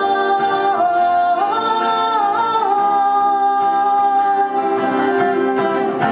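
A woman singing a slow melody with long held notes, accompanied by a strummed acoustic guitar, performed live.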